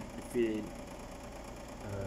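A man's brief hesitation sound about half a second in, then a pause over a steady low mechanical hum.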